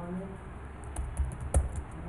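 Computer keyboard typing: a quick run of keystrokes starting about a second in, as a command is typed.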